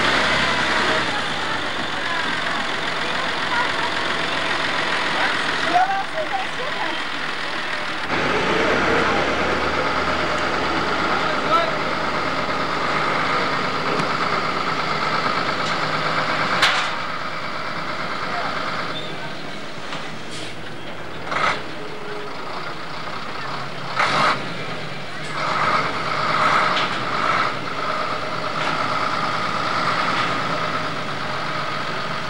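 Truck and tractor engines running, with indistinct voices and a few sharp knocks in the second half.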